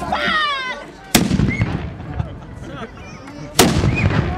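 Two shots from historical black-powder guns touched off with a hand-held match, about two and a half seconds apart.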